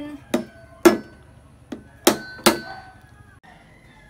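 A kitchen cleaver striking the shell of a steamed mud crab claw to crack it: five sharp knocks over about two and a half seconds, the second the loudest and the last two ringing briefly.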